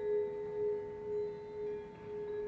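Vibraphone notes left ringing after being struck: a soft chord of a few steady pitches held with no new strokes, its loudness gently pulsing about twice a second.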